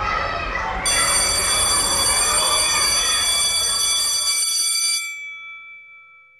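A steady, high ringing tone, like an alarm bell, starts about a second in over a noisy background and cuts off about five seconds in. A fainter tone lingers briefly and fades out.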